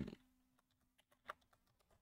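Faint computer keyboard keystrokes, a few soft clicks and one sharper key press about a second and a half in.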